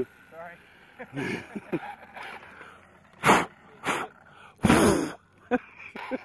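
A person sneezing loudly close to the microphone, a few sharp bursts with the loudest near the end, after a little soft murmuring at the start.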